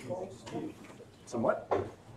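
Indistinct voices of people talking in a meeting room, with a sharp click right at the start and a brief rising squeak-like sound about one and a half seconds in.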